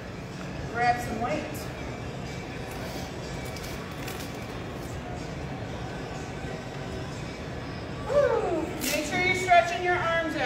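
A person's voice in short stretches, about a second in and again near the end, over steady background noise.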